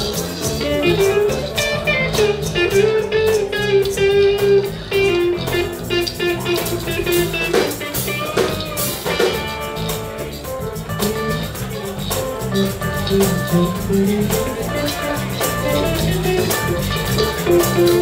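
Live funk and soul band playing an instrumental passage, electric guitar to the fore over bass and drum kit.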